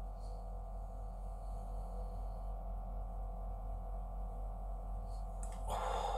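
Quiet room tone with a steady low hum. A man's voice starts just before the end.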